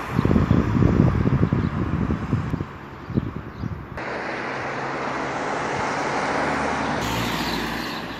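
Wind buffeting the microphone in the first two or three seconds, then the steady rushing road noise of a moving car, which changes abruptly twice.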